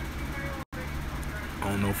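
Steady low background hum during a pause in speech, broken by a brief dropout to silence a little over half a second in; a man starts speaking again near the end.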